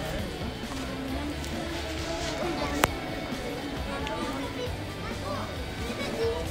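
Busy pedestrian street ambience: passers-by talking among themselves, with music playing in the background. A single sharp click sounds about three seconds in.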